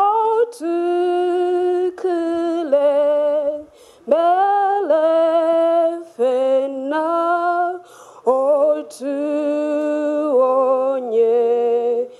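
A young woman singing unaccompanied into a microphone, a slow melody of long held notes with a slight vibrato, in short phrases broken by quick pauses for breath.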